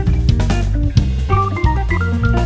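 Instrumental band playing live: a keyboard with an organ sound over electric bass, drum kit and guitar, with held organ chords in the second half.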